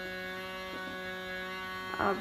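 Steady electrical hum: one low tone with a ladder of overtones above it, holding unchanged throughout.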